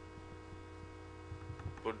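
Steady electrical mains hum on the recording, a low even drone with a ladder of overtones. A man's voice starts a word near the end.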